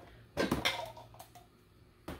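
Small household items being handled while sorting: a short rustling clatter about half a second in, then a few light taps.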